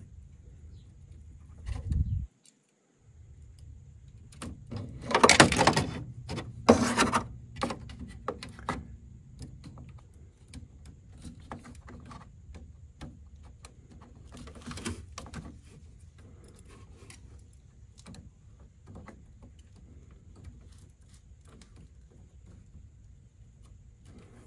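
Small clicks and rattles of hands and metal tweezers working wire connectors into a 3D printer's toolhead board and pressing the wires into the plastic wire organizer. There is a louder clattering stretch about five to seven seconds in, then only scattered faint ticks over a low steady hum.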